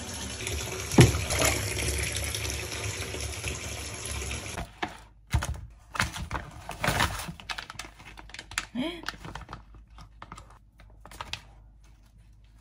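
Bath tap running into a filling bathtub, a steady rush of water, with one sharp knock about a second in. After about four and a half seconds the water cuts off and plastic food packaging crinkles and rustles in short bursts as raw meat is unwrapped.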